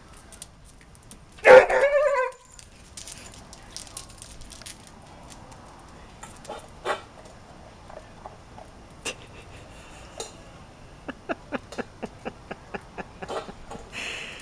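Basset hound giving one short, loud bark about a second and a half in. Scattered sharp clicks follow, and near the end they run quickly at about four a second.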